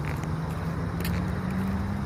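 A motor vehicle engine running, a low hum that rises slowly and steadily in pitch.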